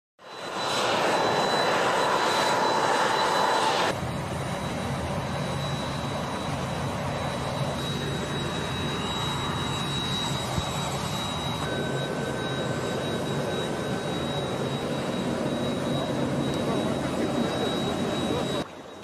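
Jet aircraft engines running on an airfield apron: a steady rushing noise with a thin high whine. It is louder for about the first four seconds, then settles into a steadier, lower hum.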